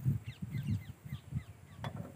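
Birds chirping and calling, many short falling notes in quick succession, over irregular low thuds and one sharp click near the end.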